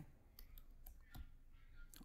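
Faint computer keyboard typing: a few scattered key clicks.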